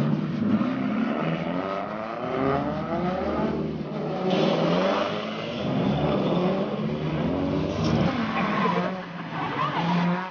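1/10-scale electric RC drift cars sliding around an asphalt track. Motor whines rise and fall in pitch with the throttle over a steady scrub of tires.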